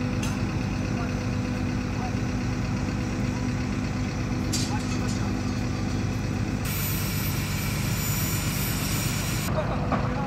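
Heavy mobile crane's diesel engine running steadily as it holds a suspended precast concrete beam. A high, steady hiss cuts in about seven seconds in and stops abruptly about three seconds later.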